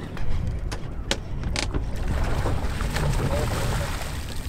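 Low rumbling wind and handling noise on the camera microphone aboard a boat, with a few sharp knocks in the first two seconds.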